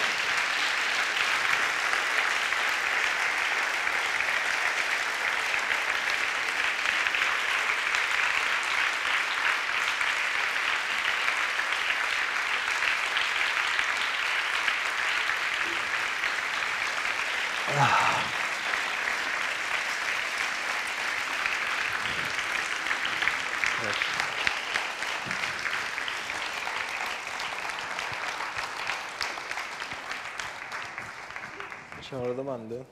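Audience applauding steadily for half a minute, easing off slightly toward the end, with a brief louder sound about eighteen seconds in.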